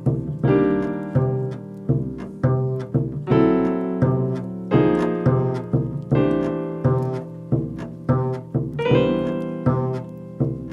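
Jazz duet of upright double bass and piano. The bass is plucked pizzicato in a run of separate notes, each fading before the next, under piano chords.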